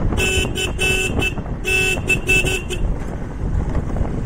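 Motorcycle horn beeped in a rapid string of short toots, two quick bursts of about four beeps each in the first three seconds. Underneath are wind rush on the microphone and engine rumble from the moving bike.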